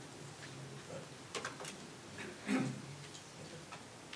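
Faint scattered clicks and knocks of movement picked up by a lectern microphone, with one louder soft thump about two and a half seconds in, over a low steady room hum.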